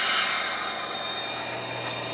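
HO scale model diesel locomotive (a Santa Fe SD40-2 model) running along the track with its train: a steady hissing running noise over a faint low hum, a little louder at the very start.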